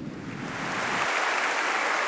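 Large congregation applauding, the applause swelling over the first second and then holding steady.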